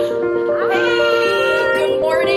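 Gentle intro music with a woman's long excited exclamation over it, rising in pitch and then held, starting about half a second in.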